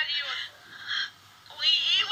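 A high-pitched, wavering voice in short stretches: one at the start, a brief one about a second in, and another near the end.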